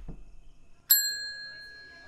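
A single tap on a counter service bell about a second in: one bright ding that keeps ringing and fades slowly.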